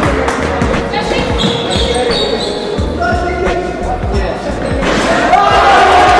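A basketball bouncing on a wooden gym court during play, with players' voices.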